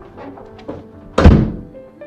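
A door being shut with one loud thunk about a second in, over soft background music.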